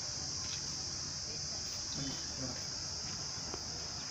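Steady high-pitched insect chorus, a continuous shrill buzz, with faint low voices in the background.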